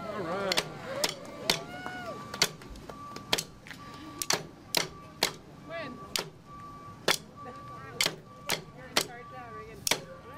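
Drumsticks clicked together in a steady beat, about two sharp clicks a second, keeping time for a marching band, with people talking in the background.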